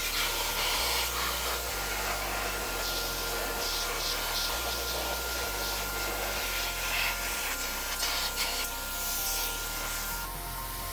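High-pressure water jet from a pressure-washer lance hitting a car's alloy wheel and tyre: a steady hiss of spray that swells and fades as the jet sweeps across the wheel.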